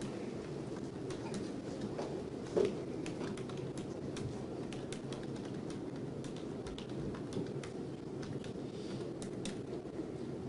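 Courtroom room noise: a steady low background murmur with scattered light clicks and rustles, and one brief louder sound about two and a half seconds in.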